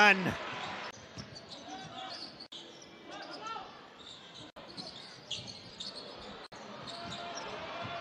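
Basketball game sound from the court at low level: a ball bouncing on the hardwood and short shoe squeaks over a faint crowd murmur. The sound drops out briefly three times, at the cuts between highlight clips.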